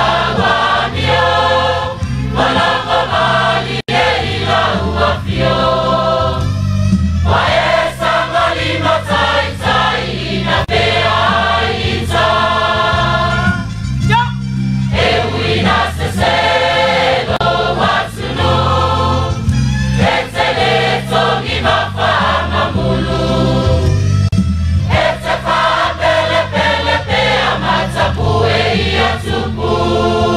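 A choir singing a hymn in phrases, over a steady low instrumental accompaniment.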